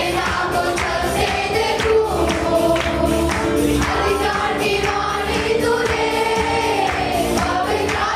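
Live worship song: a group of men and women singing together, led by women on microphones, over an electronic keyboard and a steady beat of about two strokes a second.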